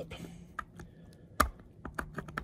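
A metal dental pick scraping along an HO-scale model railroad rail, peeling off the epoxy left over it: a few small clicks and ticks, with one sharper click about one and a half seconds in.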